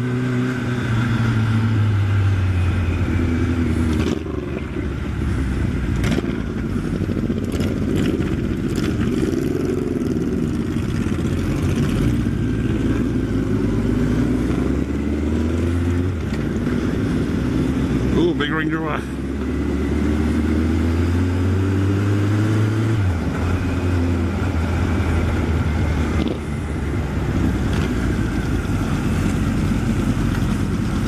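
Honda CB1100SF X-Eleven's inline-four engine pulling through the gears: its pitch climbs and drops back at each gear change, several times over, under steady wind noise.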